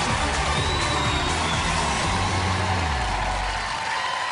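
Studio audience cheering over music with sustained low notes, the music stopping just before the end while the cheering carries on.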